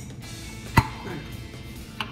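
A single sharp knock about a second in, from a glass jar of maraschino cherries being handled.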